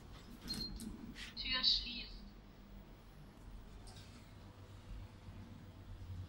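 A short recorded elevator voice announcement, under a second long, about a second and a half in, preceded by a few light clicks with a brief high beep. A low steady hum runs under it inside the elevator cab.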